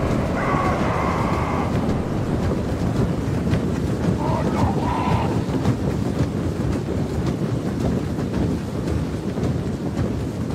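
A huge army of orcs marching: a steady rumble of many overlapping heavy footfalls and armour clanking, with a few gruff shouts rising out of it about half a second in and again around four seconds in.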